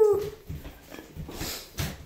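A Great Dane puppy's whine trails off just after the start, followed by a few scattered soft knocks and scuffs.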